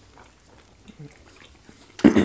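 Faint close-up eating sounds: fingers pinching and pulling at soft fufu in soup, with small wet clicks of chewing and lip smacks, and a short low hum-like voice sound about a second in.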